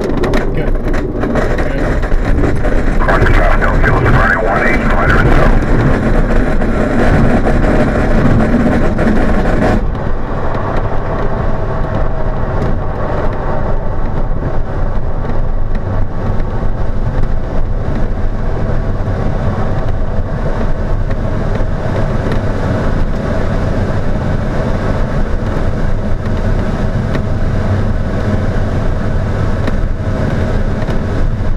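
Loud, steady noise inside an ASK 21 glider's cockpit during an aerotow takeoff: the glider's wheel rumbling over the grass strip and rushing airflow, with the tow plane's engine running ahead. About ten seconds in, the higher hiss drops away and a steadier rumble goes on.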